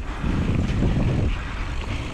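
Wind rumbling on the microphone of a mountain bike camera, with the bike's tyres rolling over a dirt trail. The low rumble swells for about a second just after the start.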